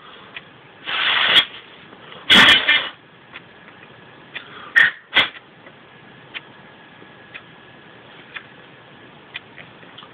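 Breath blown hard through the blowpipe of a Hümmelchen (small German bagpipe): two loud rushes of air in the first three seconds, then two short puffs about five seconds in. After that only faint clicks from handling the pipes.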